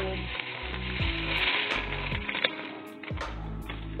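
Sesame seeds pouring from a plastic bag into a pot: a grainy, hissing patter that swells about a second in and thins out toward the end.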